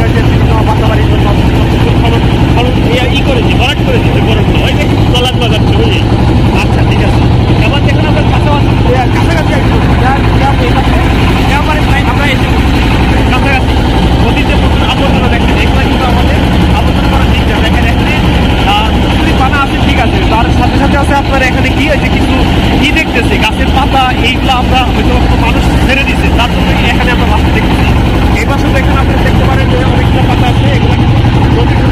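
A motorboat's engine running steadily and loudly, a constant low hum under the boat, with people's voices talking over it.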